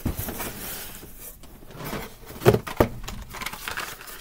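Carded Hot Wheels cars in plastic blister packs and a cardboard shipping case being handled: rustling and clacking, with a sharp knock about two and a half seconds in.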